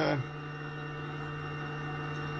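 Steady electrical hum with a faint, constant high-pitched tone above it, from the cockpit's powered-up avionics with the engine off.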